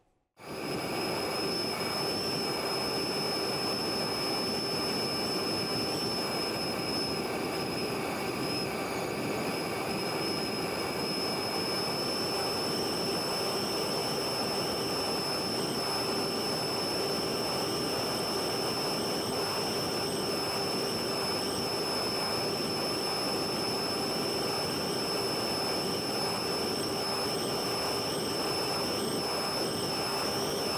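Onboard camera audio of a small electric FPV airplane in flight: a steady motor-and-propeller drone with a high whine over it and a rush of air noise, cutting in abruptly just after the start.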